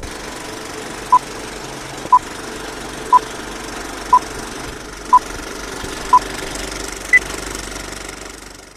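Film-leader countdown sound effect: a steady film-projector clatter, with a short beep once a second, six times, then one higher beep near the end as the count reaches two.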